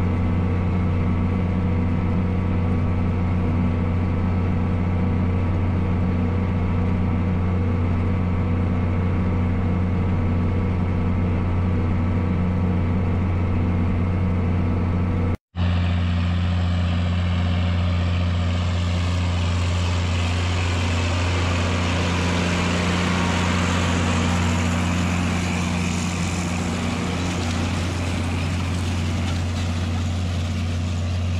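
John Deere 4650 tractor's six-cylinder diesel engine running steadily under load, pulling a grain drill. After a sudden break about halfway, the engine is heard from the field as the tractor and 1560 drill come closer, with more hiss from the drill and tyres on the ground mixed in.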